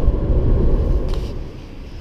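A car driving at motorway speed, heard from inside the cabin: a steady low road and engine rumble that fades out about one and a half seconds in.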